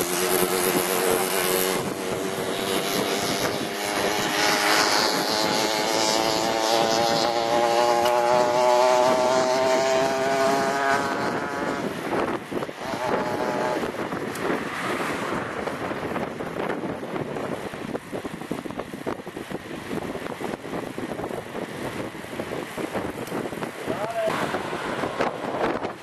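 A motor vehicle's engine on the road, its pitch rising steadily for about ten seconds as it accelerates, then fading away into steady wind and road rush.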